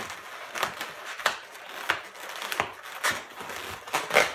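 Inflated latex twisting balloons squeaking and rubbing against each other as the spiralled pair is bent and squeezed into a candy-cane hook: a string of short, sharp squeaks and rubs at uneven intervals, roughly one every half second to second.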